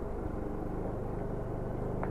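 Bajaj Dominar 400's single-cylinder engine running steadily as the motorcycle rides through a wet, slushy track.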